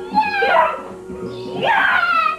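Children shrieking with excitement: two high, falling squeals, the second about a second and a half in, over a steady faint hum.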